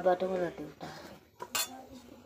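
A sharp clink of steel kitchenware knocked together, once, about a second and a half in.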